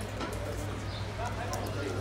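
Spectators' voices talking and calling out across the pitch, fairly faint, over a steady low hum.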